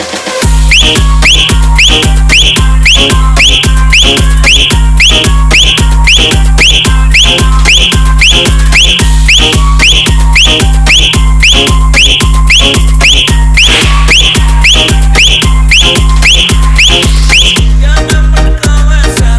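Loud DJ dance-music mix with a hard 'punch' bass kick: the full beat drops in suddenly at the start, a heavy deep kick about twice a second with a short, falling whistle-like high note repeating on the beat.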